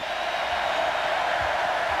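Steady noise from a large stadium crowd, an even wash of many voices with no single voice standing out.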